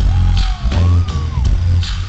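Live hip-hop/dancehall band music heard from the audience: a heavy, boomy bass beat with sharp drum hits about twice a second from the on-stage drum line. A thin tone slides up and then back down in the middle.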